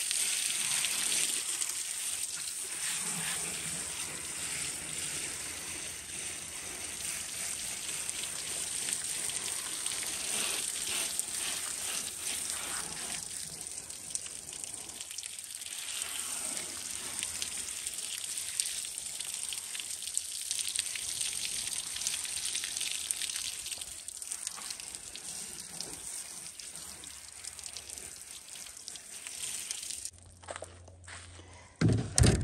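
Garden-hose spray nozzle spraying water over a pile of freshly dug sweet potatoes on a plastic folding table, rinsing off the soil: a steady hiss of spray pattering on the potatoes and tabletop, easing briefly a couple of times.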